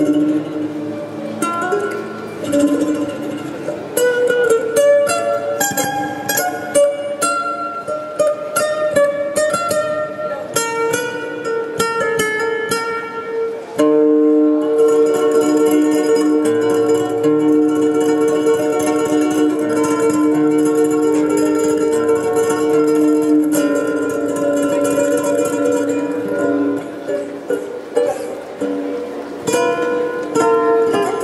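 Solo acoustic guitar played fingerstyle: quick runs of plucked single notes, then from about halfway long sustained notes held over a low bass.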